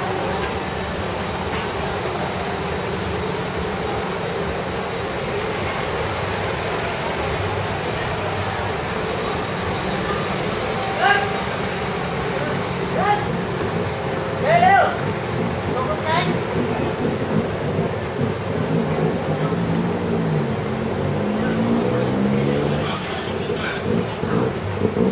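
Busy outdoor night-market ambience: a steady hum of people talking and traffic. A few brief, sharp, high-pitched sounds come around the middle, and nearer voices come near the end.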